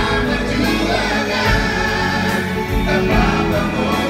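Live concert music: a group of singers singing together, backed by an orchestra with strings and a band.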